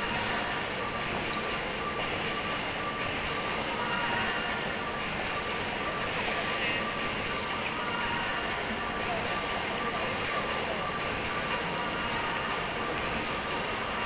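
Steady background hubbub of a large indoor space with indistinct voices mixed in, under a few faint steady tones.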